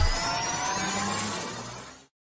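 Cinematic sound effect from an animated countdown intro: several synthetic tones rising slowly in pitch over a rushing hiss. It fades away and cuts off into silence at the end.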